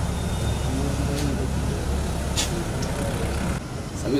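A steady low rumble with faint voices behind it. The rumble drops away suddenly near the end.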